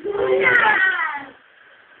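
A small child's high voice shouting a long, drawn-out "Unooo", the pitch sliding down over about a second before it stops.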